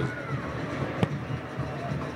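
Steady stadium crowd murmur, with a single sharp thud about a second in as the goalkeeper kicks the ball for a goal kick.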